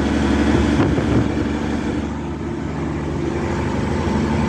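Semi-truck diesel engine running steadily, heard from inside the cab. Its low hum shifts about a second in.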